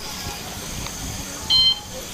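Outdoor crowd ambience on a busy walkway, with one short, loud electronic beep about one and a half seconds in.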